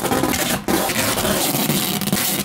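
Duct tape ripping as it is pulled off the roll and laid across an inflatable ball: a short rasping pull, a brief break just after half a second in, then a longer pull.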